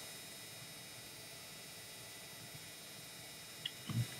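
Quiet room tone: a faint steady hiss, with a couple of faint small clicks near the end.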